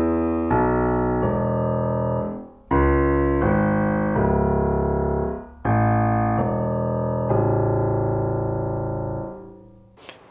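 1925 Chickering concert grand piano played in three slow phrases of sustained chords, each chord left to ring, with a full bass register freshly fitted with new bass strings. The last phrase dies away near the end.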